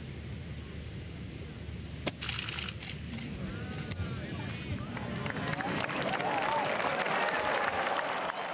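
A golf club striking the ball from the rough in a flop shot, one sharp click about two seconds in. Spectators then call out and the crowd noise swells into cheering and applause as the ball rolls up close to the hole, growing louder toward the end.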